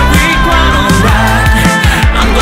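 Pop music with a steady bass-drum beat under held high melody notes, with no sung words.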